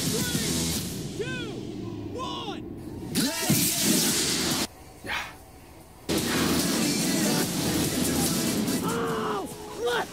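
Two-engine model rocket launching: the motor's rushing hiss, mixed with excited shouts, cuts off suddenly about halfway through. A second later a similar rush resumes and runs on under more voices.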